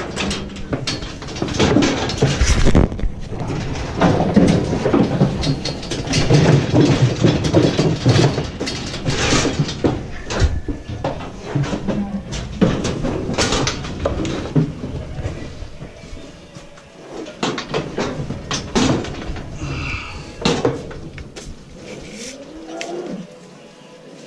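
Steel cattle squeeze chute and headgate clanging and rattling as cattle shift and push inside it, busiest in the first half. A cow lows briefly near the end.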